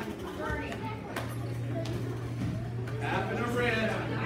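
Several people talking and calling out in a large hall, loudest near the end. A steady low hum sets in about a second in.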